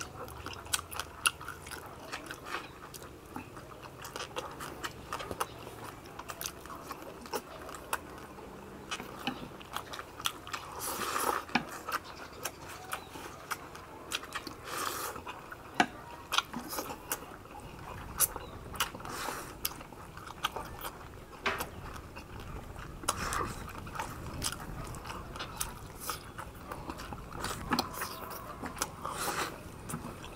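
Two people eating fast, chewing roast pork and slurping rice vermicelli noodles, with frequent sharp clicks of chopsticks and mouth sounds. Several longer slurps stand out, the loudest about eleven and fifteen seconds in.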